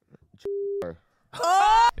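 A short censor bleep: one steady tone lasting about a third of a second. It is followed near the end by a brief high-pitched voice rising in pitch.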